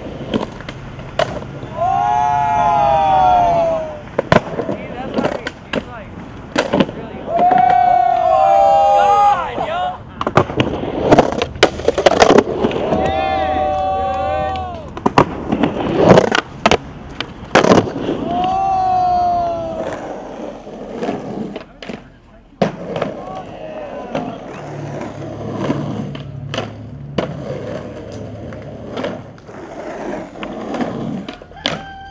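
Skateboard tricks on banks and ledges: sharp pops, landings and wheel clacks. These are broken by several long, ringing screeches of about two seconds each, from trucks grinding along the edge of a tiled bank. The sound is quieter with scattered knocks in the last third.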